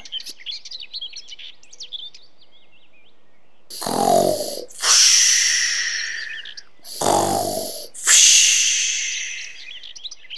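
Cartoon snoring sound effect for a sleeping wolf: two loud snores, each a low rattling inhale followed by a long hissing exhale that fades away. Birds chirp softly in the background, alone for the first few seconds.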